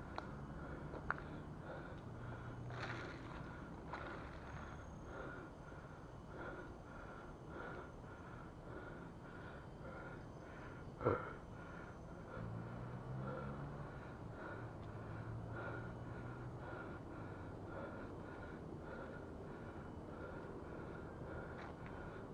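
A cyclist breathing hard while pedalling up a very steep climb, over a faint rhythmic sound about twice a second. There is one sharp knock about eleven seconds in.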